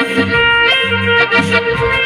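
Live band instrumental of a Hindi film song: a saxophone lead over electronic keyboard, with a bass line and a steady beat.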